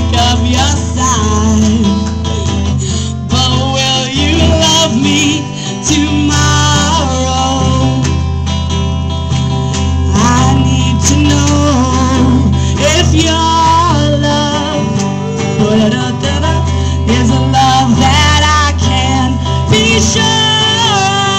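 A woman singing live while playing guitar, with sustained chords changing every second or two under her wavering vocal line.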